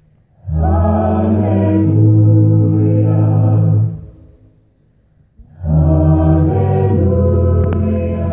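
Mixed a cappella group of men and women singing into handheld microphones, without instruments: two long held chords over a deep bass note, each about three seconds, with a pause of about a second and a half between them.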